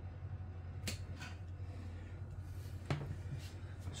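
Quiet kitchen room tone with a low steady hum and two light clicks, one about a second in and a sharper one near three seconds in, as hands start handling chopped raw ingredients in a glass oven dish.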